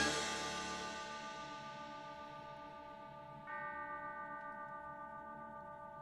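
Bell-like tones ringing out and fading as the music's last chord dies away; about three and a half seconds in, a new bell-like note is struck and slowly fades.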